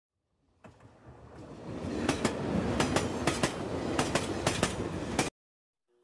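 Train wheels running over rail joints with a steady clickety-clack in close pairs, about one pair every half second, over a rumble. The sound fades in, builds over the first two seconds, then cuts off suddenly.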